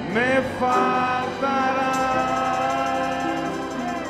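Congregational worship song with instrumental backing: voices hold long notes, with one voice sliding up into a note at the start.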